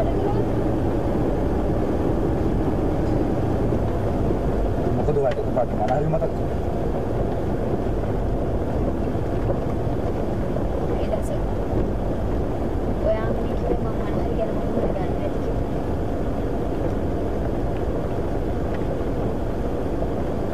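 Steady road and engine noise inside the cabin of a moving van.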